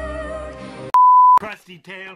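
A censor bleep: one loud, steady, pure electronic tone about half a second long, dropped in about a second in, right after a sung love song with instrumental backing is cut off. A man's voice starts speaking straight after the bleep.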